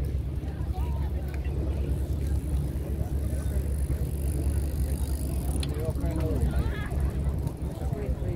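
Wind buffeting the phone's microphone: a steady low rumble, with faint voices of other people in the background.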